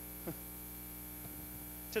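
Steady electrical mains hum in the recording's sound system during a pause in the preaching, with one brief faint sound about a third of a second in.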